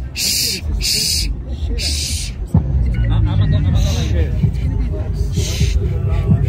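Crowd voices with several short hissing bursts, then background music with a deep bass comes in suddenly about halfway through and carries on under the voices.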